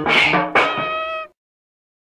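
Lo-fi hardcore punk track ending: a held high note rings over the band, then everything cuts off abruptly a little over a second in, leaving dead silence.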